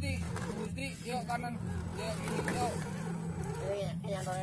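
Electric motor and gear drive of an Axial SCX10 III radio-controlled crawler whining steadily at low speed as it crawls through a muddy rut, with voices talking over it.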